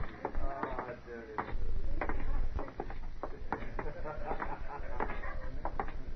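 Radio-drama sound-effect footsteps: two men's boots walking off in a string of sharp steps, with voices and a low rumble behind them.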